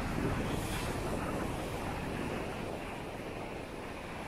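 Steady wash of sea surf on a beach, mixed with low rumbling wind buffeting the microphone.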